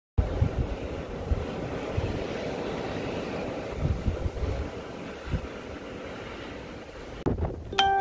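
Blizzard wind buffeting the microphone in uneven low gusts. It breaks off abruptly near the end, where a new windy recording begins.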